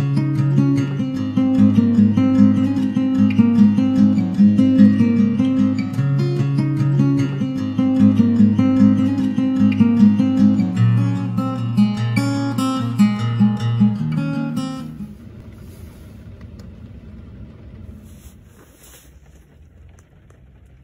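Intro music: strummed and picked acoustic guitar, which stops about 15 seconds in, leaving only faint background noise.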